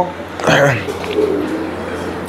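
Domestic pigeons cooing, a soft low wavering coo about a second in, after a brief bit of a man's voice.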